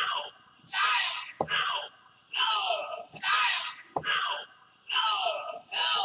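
Samples triggered from Akai MPC drum pads: a run of about seven short vocal-like hits, each sliding down in pitch, roughly one every 0.8 seconds, with a couple of sharp clicks among them. The falling pitch comes from the MPC 2.10 pitch envelope applied across the kit.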